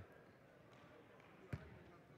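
Near silence of faint arena background, broken by a single thud of a basketball bouncing on the hardwood court about one and a half seconds in.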